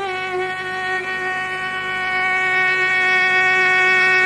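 Violin in a Carnatic concert holding one long, steady note with a bright, buzzy tone, with a faint low drone beneath.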